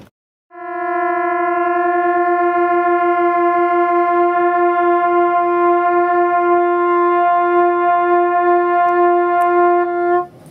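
Two trumpets holding the same note together, starting about half a second in. One is sharp and the other flat, so the tone pulses in beats, and the beats slow down as the flat player pushes in his tuning slide to bring his pitch up to match.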